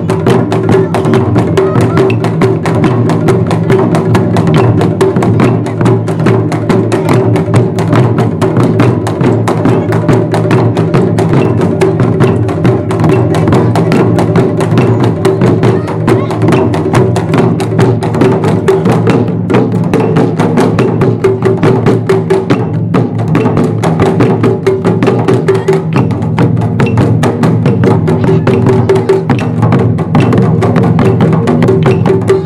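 Taiko ensemble playing: several large barrel-bodied Japanese drums struck with wooden sticks in a fast, dense, steady rhythm, loud throughout.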